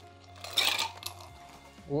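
Ice cubes dropped into a metal cocktail shaker tin, a short clattering rattle about half a second in.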